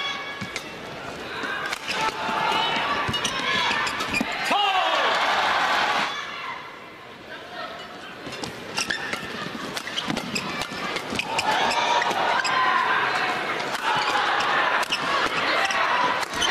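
Badminton rally: sharp clicks of rackets striking the shuttlecock in quick, irregular succession. Arena crowd noise swells loudly about two seconds in, dips around six to eight seconds, and rises again from about eleven seconds on.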